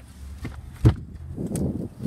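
Handling noise in an SUV's cargo area: a few light clicks and one loud, sharp knock a little under a second in, as of a cargo floor panel or trim being set down, then rustling.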